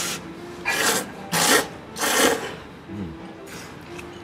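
A person slurping thick ramen noodles: three loud slurps in quick succession, a little over half a second apart.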